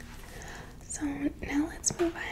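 Soft-spoken, partly whispered woman's voice starting about a second in, after a quiet first second.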